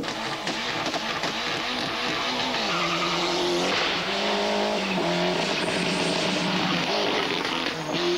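Ford Escort RS Cosworth rally car's turbocharged four-cylinder engine revving hard as the car accelerates along the stage, its pitch changing in steps.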